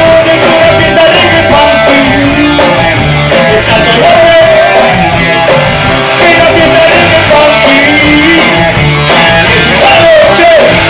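Live reggae-punk band playing loud: electric guitars, drum kit and keyboard, with a singer's voice over the top.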